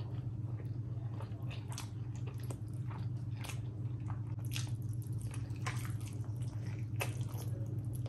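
Close-up chewing and wet mouth sounds of someone eating curried rice and chicken by hand: irregular sharp wet clicks and squelches as the mouthfuls are chewed.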